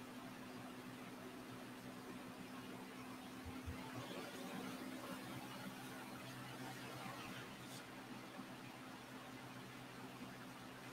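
Quiet room tone: a faint steady low hum under an even hiss, with a soft low bump about three and a half seconds in and a faint click near the end.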